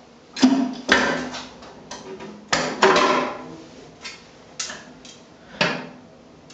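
The hinged door of a Stomacher 400 Circulator lab paddle blender being worked loose and lifted off: a string of about six clunks and clicks, some followed by a short ringing.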